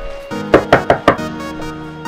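Four quick knocks on a wooden door, loud and sharp, about half a second in, over background music.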